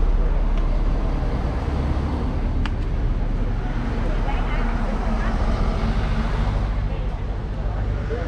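Road traffic with a large bus passing close by: a low engine rumble, loudest near the start, then a steadier engine drone a few seconds in. Voices talk faintly underneath.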